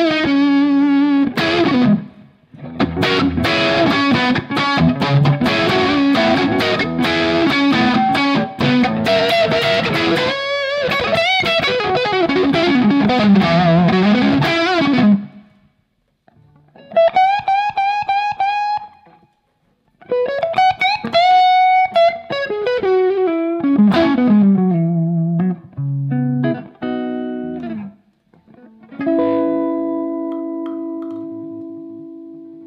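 Electric guitar playing overdriven lead: a 1952 Gibson Les Paul converted to 1959 spec, with Roger Daguet PAF humbuckers, through a Friedman BE100 amp. Fast, dense runs for about fifteen seconds, then shorter phrases with string bends separated by brief pauses, ending on a chord left to ring.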